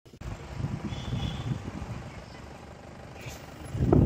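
Low, uneven rumble of wind buffeting the microphone, swelling near the end; no bangs or blasts.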